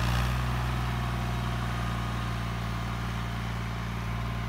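Ghazi tractor's diesel engine running steadily under load as it pulls a cultivator through dry soil, fading slightly as it moves away.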